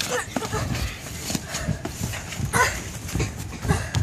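Boxing gloves thudding on gloves and headgear, and sneakers scuffing on the ring canvas, as two boys spar: a string of irregular short knocks, with two brief voice sounds near the start and past the middle.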